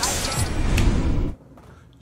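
A deep, rumbling bass whoosh, an intro sound effect, takes over from the rap music and cuts off suddenly after just over a second. A short quiet gap follows.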